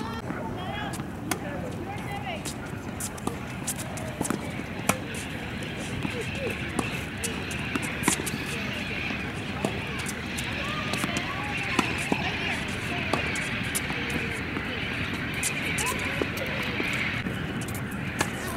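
Tennis balls struck by rackets in a rally: sharp single pops every three or four seconds, with fainter hits among them. Distant voices chatter underneath.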